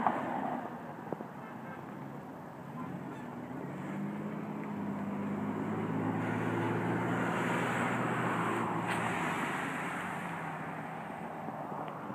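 A vehicle passing by: a low engine hum with road noise that swells from about four seconds in, is loudest around eight seconds, then fades away.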